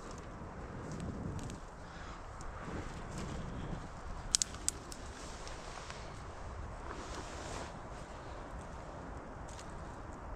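Small wood campfire burning over a soft, steady hiss, with a quick cluster of sharp crackles about four and a half seconds in.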